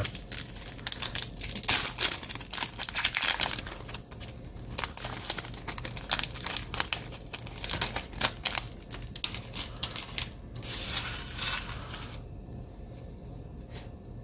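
A foil-lined trading-card pack wrapper being torn open by hand and crinkled, with irregular crackling and rustling as the cards are slid out. The crinkling stops about twelve seconds in.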